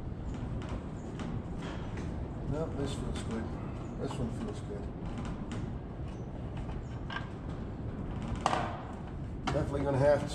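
Light clicks and knocks of hands working on a plastic planter seed hopper and its meter fasteners, with a sharper click about eight and a half seconds in. Some low muttering comes about three seconds in.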